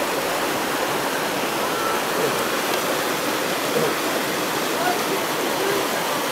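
Creek water rushing over rocks through a small rapid, a steady wash.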